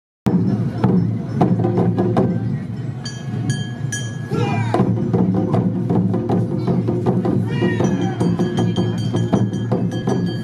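Awa Odori procession music: drums and a ringing hand gong beating a steady rhythm under held high tones. Two high-pitched calls, typical of the dancers' shouts, rise over it about four and a half and seven and a half seconds in.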